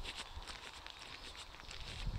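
Quiet outdoor ambience: low, uneven wind rumble on a phone microphone, with faint scattered ticks of handling or rustling.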